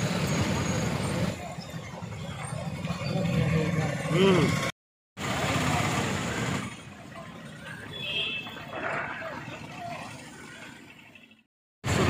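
Street traffic: motorcycle and small-vehicle engines running and passing, with people talking in the background. The sound cuts out completely twice for a moment.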